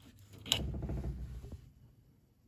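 A sharp click about half a second in as a hand-held metal dial thermometer is taken off a pipe fitting, then about a second of rubbing and handling noise that fades out.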